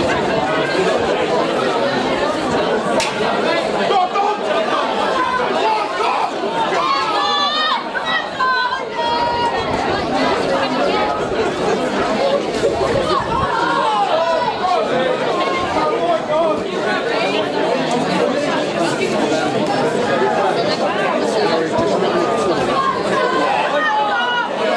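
Crowd of spectators chattering, many voices overlapping at once, a steady hubbub.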